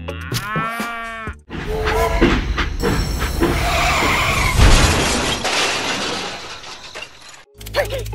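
A cow's moo, wavering in pitch, lasting about a second. It is followed by a long, loud crash-and-clatter sound effect of about six seconds, peaking a little past the middle, as for a train derailing.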